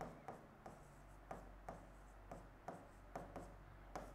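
Faint taps and short scrapes of a pen writing numbers on an interactive whiteboard screen, about three strokes a second, over quiet room tone.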